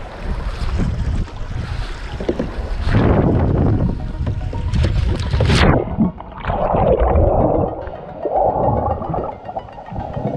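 Water splashing and wind buffeting a GoPro's microphone as a kayak capsizes. About six seconds in, the sound turns abruptly muffled and gurgling as the camera goes under water.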